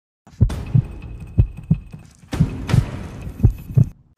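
Heartbeat sound effect: pairs of low thumps about once a second, with a thin steady high tone over them.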